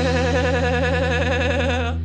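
Live rock band music: a long note wavering in pitch, held over a ringing guitar chord and cutting off near the end.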